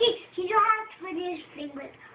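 A young child's voice in sing-song pretend-language babble, with some drawn-out notes.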